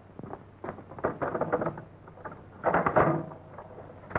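A run of light clicks and rattles from the chest X-ray unit's film holder being handled and adjusted, with the loudest cluster about three seconds in.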